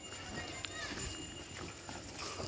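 Footsteps of a small group walking along a dirt path, with irregular soft thuds and faint, indistinct voices.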